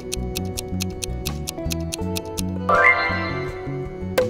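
Background music with a steady beat and a clock-like ticking countdown effect. About three-quarters of the way in, a bright chime-like sound effect comes in and fades as the quiz timer runs out.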